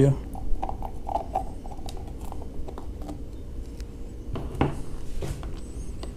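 Light scattered clicks and taps as the lid of a wired electrical control box is popped off and the servo and ESC wiring inside is handled, with a louder knock near the end.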